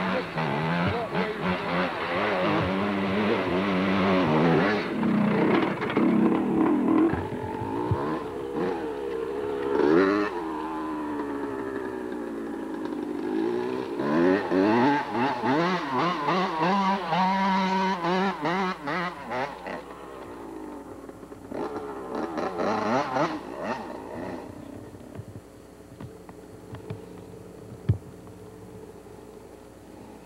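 Yamaha YZ250 two-stroke dirt bike engine revving up and down over and over as the bike is ridden close by. It fades away about three quarters of the way through.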